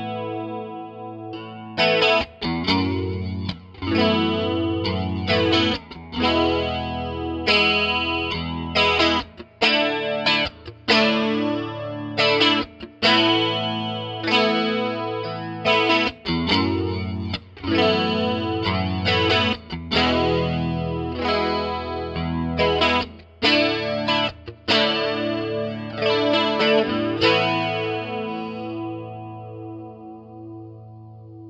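Electric guitar playing a sequence of strummed chords through a Roland Jazz Chorus JC-77 stereo combo amp with its chorus effect on, picked up by an NOS stereo pair of small-diaphragm condenser mics about 24 cm from the grille. A new chord is struck every second or two, and the last one is left to ring out near the end.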